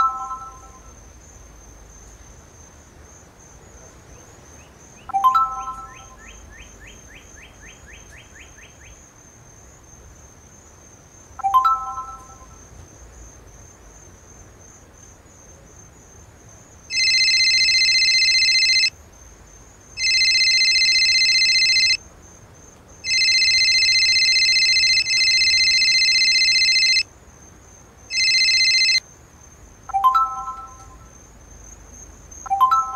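Phone text-message notification chime sounding three times, each a short bright chord of a few tones, over a faint steady chirring of crickets. From a little past the middle, an electronic phone ringtone rings loudly in repeated bursts of about two seconds with short gaps.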